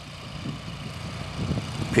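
Crawfish boat's engine running with a steady low drone as the boat works along the flooded field.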